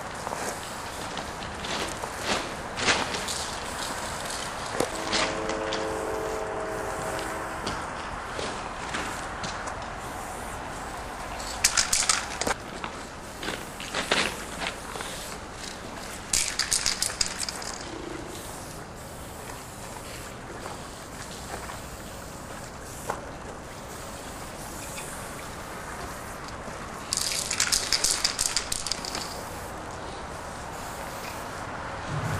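Aerosol spray-paint cans being shaken, the mixing ball rattling fast inside the can, in three short bursts: about twelve seconds in, about seventeen seconds in, and a longer one near the end. A steady horn sounds for about three seconds early on over steady outdoor background noise.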